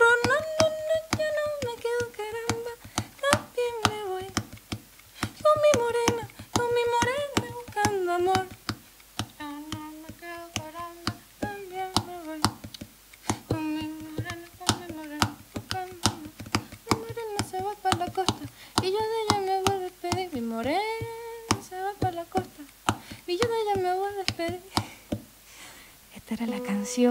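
A woman singing a wordless, humming melody with wavering vibrato, over sharp percussive taps and slaps on the body and strings of a nylon-string classical guitar. The singing stops just before the end.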